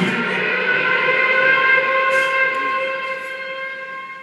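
A live band's electric guitars holding the song's last chord, which rings on steadily and slowly fades as the drums stop.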